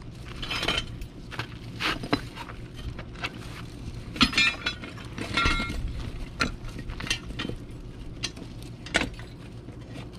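A metal hand truck clanking and knocking as it is worked over rocks and stone pavers under a hot tub, in scattered sharp knocks and clinks, the loudest a few ringing clanks about four to five and a half seconds in.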